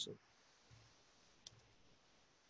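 Near silence with two faint computer-keyboard key clicks, the clearer one about a second and a half in.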